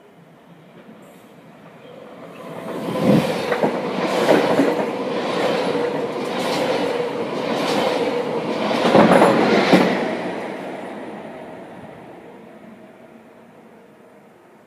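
A DB Intercity 2 double-deck train passing through without stopping: its running noise builds and holds, with a steady hum and wheels clacking over rail joints about once a second. It then fades away over the last few seconds.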